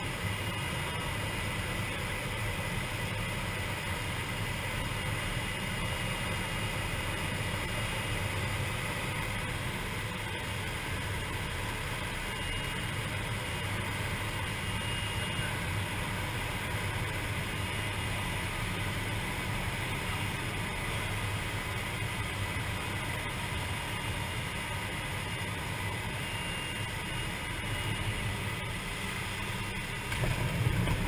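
Single-engine light aircraft's engine and propeller running with a steady drone, heard from inside the cockpit, on approach to a grass airstrip.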